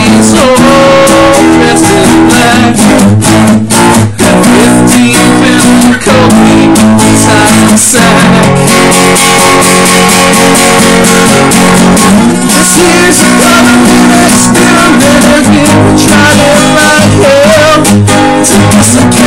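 Acoustic guitar strummed steadily in a reggae-rock song, loud, with a man's voice singing along at times.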